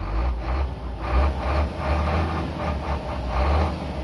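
Truck diesel engine running, heard from inside the cab over the engine cover, with a deep, unevenly pulsing low rumble. It is running well after the fuel pickup's strainer was cleaned, the air bled out and a valve replaced.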